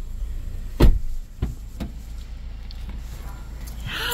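A car's rear passenger door shut with one solid thud about a second in, heard from inside the cabin, followed by two lighter knocks.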